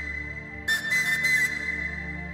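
Orchestral music led by a high, breathy flute melody: one held note, then a new note with an airy attack less than a second in, over a low sustained accompaniment.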